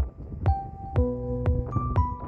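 Background music with a steady beat: a low kick drum about twice a second under sustained keyboard notes that shift about once a second.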